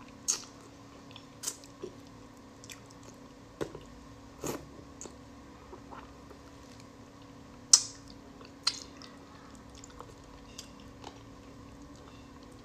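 Close-miked mouth sounds of eating braised plaice: sucking at and chewing soft fish and fin, with scattered wet smacks and lip clicks, the loudest about three quarters of the way through.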